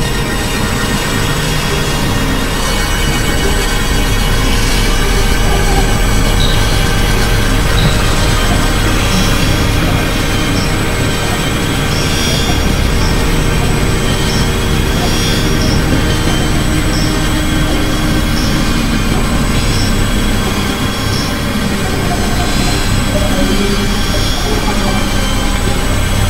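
Dense experimental electronic collage of several music tracks layered and processed into one loud, continuous wall of sound. Many held steady tones over a constant low rumble and haze, with short high squeals scattered through the middle.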